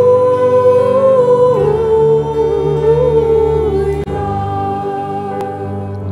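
A small group singing a slow 'Aleluia' refrain, a woman's voice on a microphone in front, in long held notes that step down in pitch.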